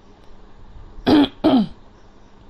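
A person clears the throat with two short coughs in quick succession, about a second in.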